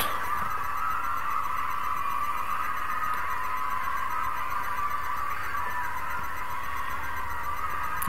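Steady background hiss with a faint, even whine in it, unchanging throughout: recording noise with no speech.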